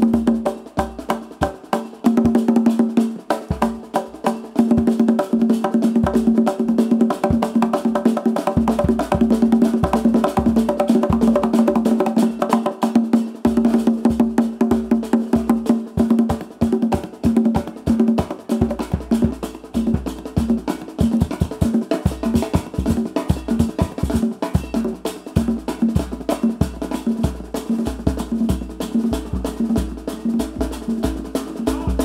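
Live band music driven by hand-played wooden barrel congas, with fast, dense drum strokes over a steady low held note.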